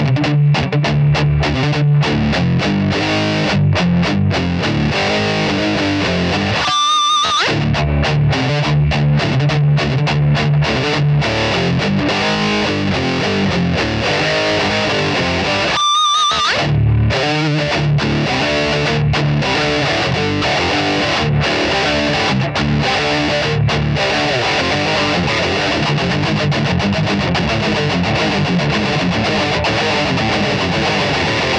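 Electric guitar, a PRS Custom 24, played through a Strymon Riverside multistage drive pedal into a Fender Vibrolux amp. The pedal is on its high-gain setting with mid push, gain and level turned all the way up, giving chunky, heavily overdriven riffing. The riff stops briefly twice, about 7 and 16 seconds in.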